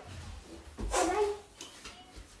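A brief wordless vocal sound from a woman, pitched and sliding, about a second in.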